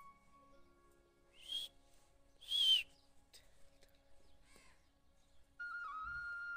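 Two short bird calls about a second apart; the second is the louder. A flute tune fades out before them and returns near the end.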